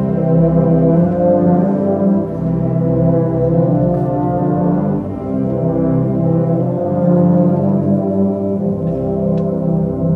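Concert wind band playing, its brass section sustaining full chords that shift every couple of seconds.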